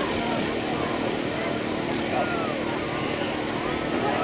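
Football stadium crowd during a play: many spectators talking and calling out at once, with no single voice standing out. A steady low hum runs underneath.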